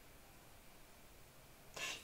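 Near silence: faint room hiss, with one short soft noise just before the end.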